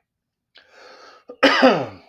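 A man clearing his throat: a loud, rough rasp with falling pitch in the second half, after a quieter breathy sound.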